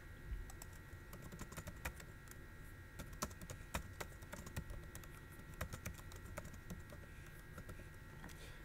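Faint computer keyboard typing: irregular quick keystrokes as a line of text is typed, over a faint steady tone.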